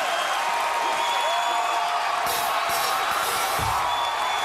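Studio audience cheering, whooping and applauding in a long, sustained ovation, with band music playing underneath.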